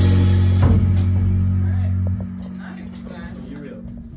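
A band with drum kit and bass holding its final note: a low bass note rings with a higher note above it, a drum-and-cymbal hit lands just under a second in, and the low note cuts off about halfway while the higher note dies away under quiet voices.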